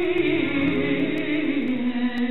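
A female flamenco singer (cantaora) holding one long, wavering melismatic sung line that slowly falls in pitch, over a flamenco guitar accompaniment.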